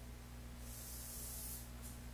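Felt-tip marker drawn across tracing paper: a scratchy hiss of a stroke lasting about a second from about half a second in, then a short second stroke near the end. A steady low electrical hum runs underneath.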